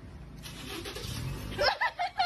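Street traffic: the low rumble and hiss of a passing vehicle, then a person's voice starts near the end.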